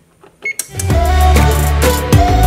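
A short electronic beep from an oven's control panel as the Start button is pressed, about half a second in. Then background music with a deep bass line and a steady beat starts and carries on.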